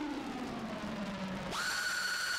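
Opening of an electronic music track: a synthesizer tone glides slowly down in pitch, then sweeps sharply up about one and a half seconds in and holds a steady high note.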